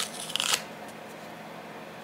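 A paper sticky note being peeled off its pad: a brief papery rustle about half a second long at the start, then quiet room tone.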